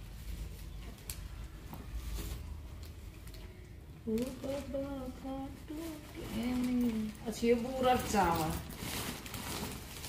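Mostly a voice talking in a small room, quietly at first and then speaking from about four seconds in; little else stands out.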